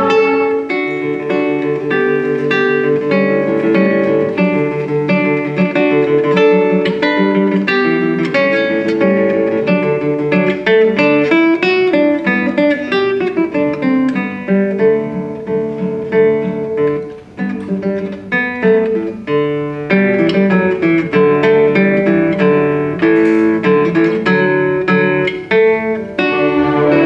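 Classical guitar playing live as the solo instrument of a guitar concerto: quick plucked runs and chords, with a brief quieter moment about two-thirds of the way through.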